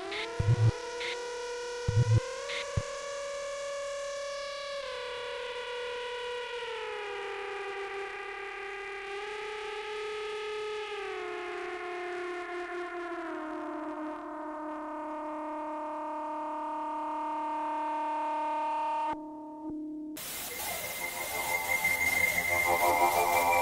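Korg Monotron synth sounds played back from a Yamaha SU200 sampler: a sustained, distorted chord of tones that slides down in pitch in several steps, with a few low thumps in the first three seconds. The chord cuts off suddenly near the end and a hiss of noise with a steady high tone takes over.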